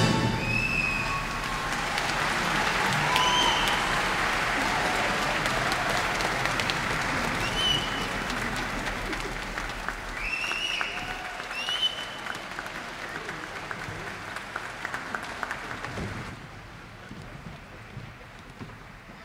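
A concert-hall audience applauding, with a few short whistles through the first half. The applause thins out and fades, dropping off about sixteen seconds in.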